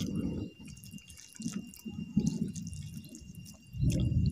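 Close-up wet chewing and mouth smacking of a person eating with his hand, in uneven bursts with small sharp clicks.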